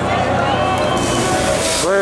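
Protesters' voices calling out over the rushing hiss of a police water cannon's jet, which comes in about a second in. At the very end one voice gives a long cry that rises and falls in pitch.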